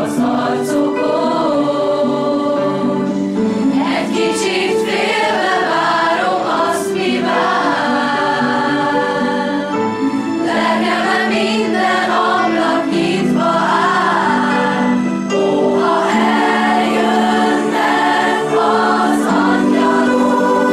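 School choir singing a Christmas piece in several parts, holding long sustained chords.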